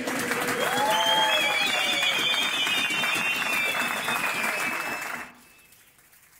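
A group of men clapping and cheering, with a few shouts over the applause, as their chant in a football dressing room ends. The sound cuts off suddenly about five seconds in.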